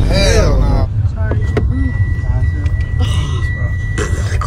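Low, steady road and engine rumble inside a moving car's cabin, with people's voices over it. A thin, steady high tone runs from about a second and a half in.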